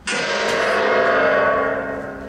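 A large gong struck once, then ringing on and slowly fading. It plays from the film's soundtrack over cinema speakers.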